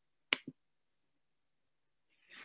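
A sharp click followed a moment later by a softer one, made as the presentation slide is advanced.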